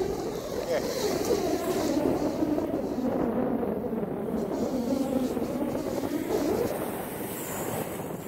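Shallow sea surf washing and swirling around the legs of someone wading, a steady rushing noise, with wind on the microphone.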